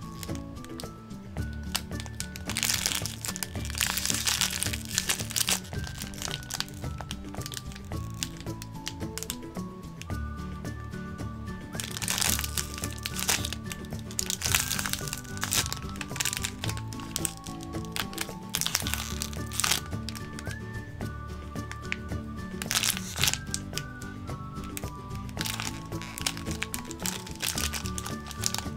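Background music, with a clear plastic bag crinkling in several bouts as it is handled and squeezed around a squishy toy inside it.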